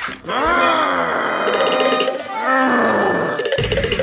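A cartoon voice groaning in one long call that falls in pitch, then a shorter second groan, over background music. A loud rushing noise cuts in near the end.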